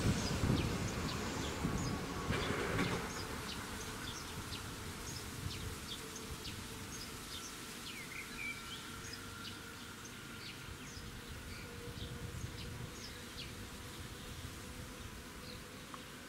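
A passing train's rumble fades away over the first three seconds. After it comes quiet outdoor ambience: a faint steady hum or buzz and scattered short, high chirps.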